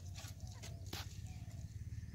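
A short-handled hoe chopping into dry soil, one sharp strike about a second in and a fainter one near the start, part of a slow digging rhythm.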